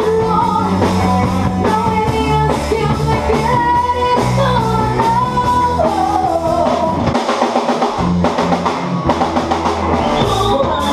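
Live band playing rock-tinged pop: a woman singing over drum kit, guitar and a low bass line, heard loud from among the audience in a small club. The bass drops out for about a second around seven seconds in, then returns.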